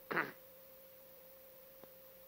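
A pause in a man's speech: the tail of a word falling in pitch at the start, then only a faint, steady, single-pitched hum with a small click near the end.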